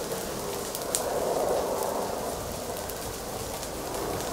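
Crackling and hissing of a forest fire burning through dry undergrowth, with a few sharp pops, the loudest about a second in.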